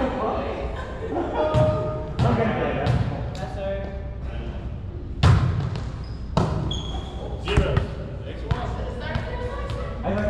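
A volleyball struck by players' hands and arms and bouncing on a hardwood gym floor during a rally: a series of sharp smacks, the loudest about five seconds in, echoing in a large hall.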